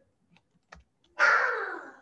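Computer keyboard typing: a few faint keystrokes, then a louder, short rushing noise a little past halfway that fades away.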